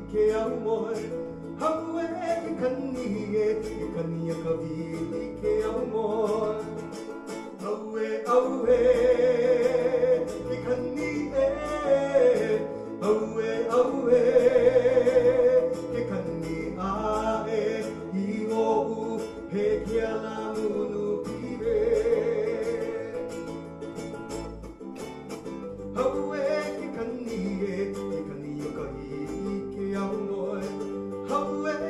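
A small band playing live: a male voice sings long held notes with vibrato over an electric bass guitar and a plucked small guitar.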